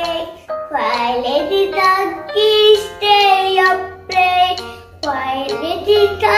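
A young girl singing a children's counting song over backing music, in phrases of held notes with short breaths between them.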